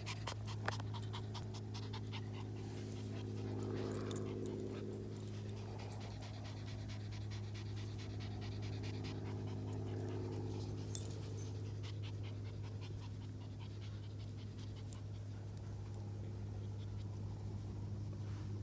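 Dogs panting close by, a quick run of rhythmic breaths, over a steady low hum.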